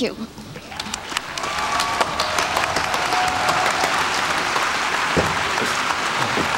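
Audience applauding, swelling over the first two seconds and then holding steady.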